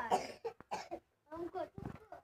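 High-pitched voices talking in short quick bursts, with a cough-like burst near the start and another near the end.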